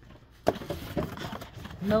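Vinyl record jackets and cardboard boxes being handled: a sharp tap about half a second in, then a few softer knocks and rustles, with a voice starting near the end.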